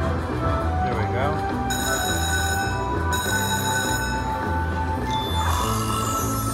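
Electronic game music and chiming tones from an Aristocrat Buffalo Gold slot machine during its free-spin bonus, over a pulsing low beat, with new sustained tones coming in twice as the reels spin.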